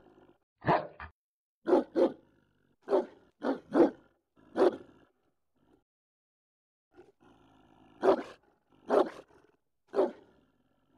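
German shepherd barking: about ten loud single barks, several in quick pairs. After a gap of about three seconds the barks resume near the end, about a second apart.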